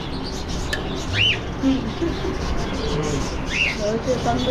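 Caged pet birds calling: two short chirps, each rising then falling in pitch, about two and a half seconds apart.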